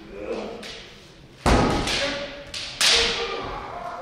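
Two loud, drawn-out kiai shouts from armoured naginata and kendo practitioners squaring off at the start of a bout. The first comes about a second and a half in with a heavy thud, and the second follows about a second and a half later.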